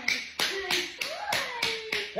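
An adult clapping to coax a toddler over: about seven quick, sharp claps in two seconds at an uneven pace, with a faint held voice underneath.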